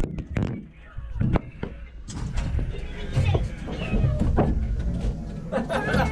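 Several knocks and thumps in the first couple of seconds as a child clambers into the cab of a parked military truck and settles at the steering wheel, over background chatter and music.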